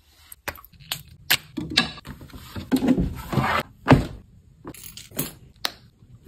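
Glass perfume bottles and other small items being picked up and set down: a run of sharp clicks, clinks and knocks, with a rustling stretch around three seconds in and a louder knock just before four seconds.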